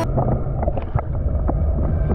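Muffled underwater sound from a camera held below the surface: a steady low rumble of water with scattered small clicks and crackles.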